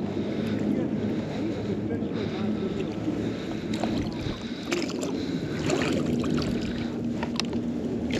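Shallow river water sloshing and lapping as a magnet on a rope is hauled up out of it, with a few faint knocks around the middle.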